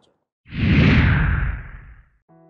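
Whoosh sound effect for a channel logo transition: a swell of hiss that slides down in pitch over a deep rumble, starting about half a second in and fading away by the end.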